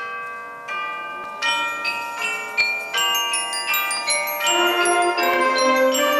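School concert band music: mallet percussion with a glockenspiel-like bell sound plays a run of ringing struck notes, one after another, each left to ring. The music swells, and lower notes from other instruments join about four and a half seconds in.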